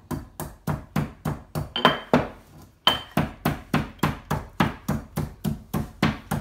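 Stone mortar and pestle pounding, a steady run of sharp knocks about three a second, with a brief pause a little before halfway.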